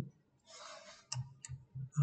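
A short soft hiss, then three faint clicks about a third of a second apart.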